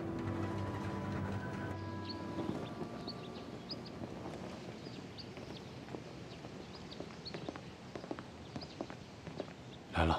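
Background music fading out over the first two or three seconds. Then outdoor ambience with scattered footsteps and light taps, and short high chirps.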